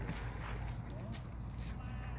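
Quiet outdoor background: a steady low rumble with a few faint, scattered clicks and ticks.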